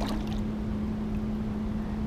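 Steady rushing of river current around the legs of a person standing in the water, with a constant low hum underneath.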